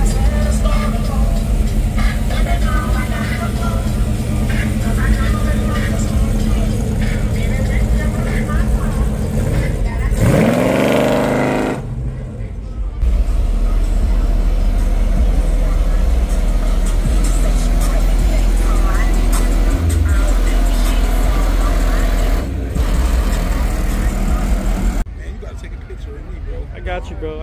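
Lifted classic Chevrolet cars on big wheels driving slowly past with a deep, steady engine rumble; about ten seconds in, one engine revs up in a rising sweep. Crowd voices and music mix in underneath.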